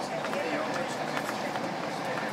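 Steady running noise of a passenger train heard from inside the carriage, with a few faint clicks and quiet voices of other passengers in the background.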